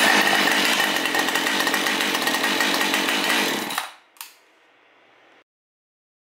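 Husqvarna 550XP two-stroke chainsaw engine running loud for about four seconds, then cutting off abruptly, followed by a single click.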